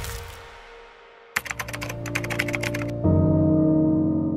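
Keyboard-typing sound effect: a fast run of clicks, about ten a second for a second and a half, as if the on-screen date is being typed out, over a low held music tone. About three seconds in, a louder sustained music chord comes in, and at the start the tail of a heavy boom is still fading.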